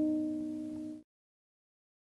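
The last strummed chord of acoustic guitar music dying away, cut off abruptly about a second in; then silence.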